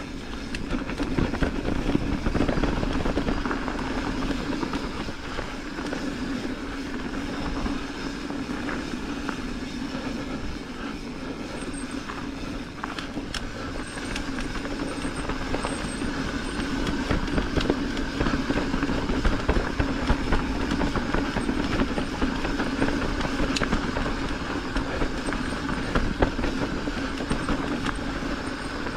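Mountain bike rolling fast down a dirt singletrack: steady rumble of the knobby tyres on packed dirt, with many small rattles and clicks from the bike over bumps.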